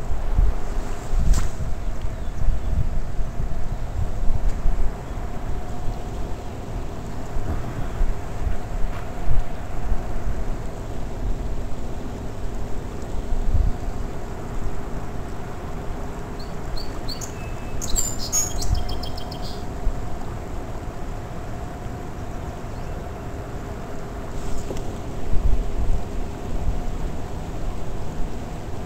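Wind buffeting the microphone in uneven gusts over a steady faint hum, with a bird chirping a quick run of high notes about two-thirds of the way through.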